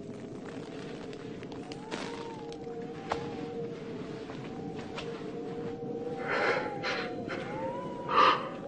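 Quiet film underscore: a steady held low note with a higher tone that slowly rises and falls above it. Faint clicks are scattered through it, and a short breathy noise comes about six and a half seconds in.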